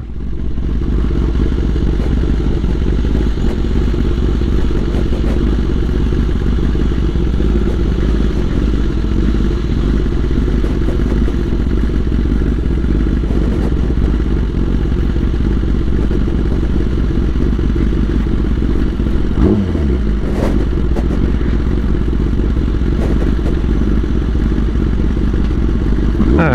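Kawasaki ZX10R inline-four motorcycle running as it is ridden, a steady low-pitched rumble that dips and rises in pitch briefly about two-thirds of the way through.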